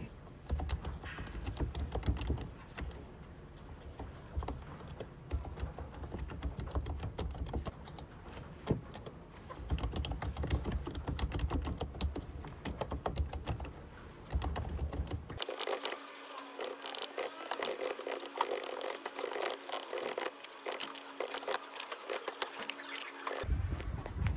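Typing on a computer keyboard: a quick, uneven run of key clicks, with a faint steady hum under the later part.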